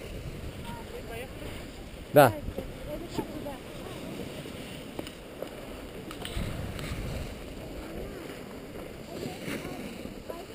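Skis sliding over groomed snow, a steady hiss, with wind rumbling on the camera microphone, stronger about six to seven seconds in.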